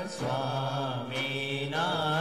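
Devotional mantra chanting in long held notes over a steady low drone, with a short break just after the start and another near the end.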